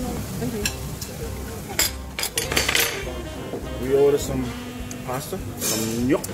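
Metal fork clinking and scraping against a ceramic bowl, with a quick cluster of clinks about two to three seconds in, over background music.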